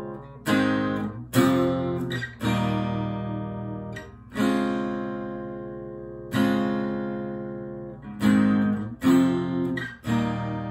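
Acoustic guitar tuned a half step down to E-flat, strummed chords played solo. About seven chords are struck, one every second or two, each left to ring and fade before the next.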